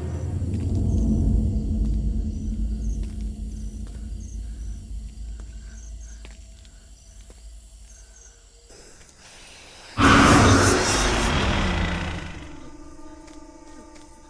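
Horror film soundtrack: a low rumbling drone that slowly fades, with faint regular chirps over it, then a sudden loud noisy blast about ten seconds in that lasts two seconds, a jump-scare sting, giving way to held eerie tones.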